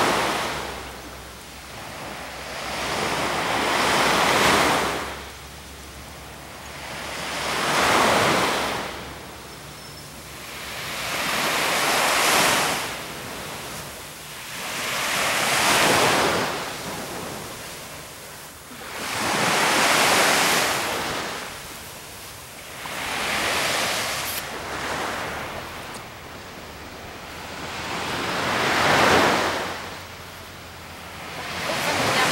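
Small waves breaking and washing up on a sandy beach, seven swells of surf about four seconds apart.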